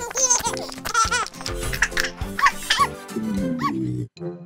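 Cartoon baby giggling in several short bursts of high laughter over bouncy background music, with a low falling slide near the end.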